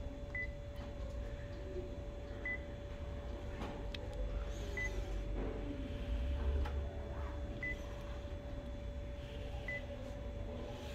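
Photocopier touchscreen control panel giving a short, high confirmation beep at each tap of a menu button, five times at uneven intervals of two to three seconds, over a steady hum.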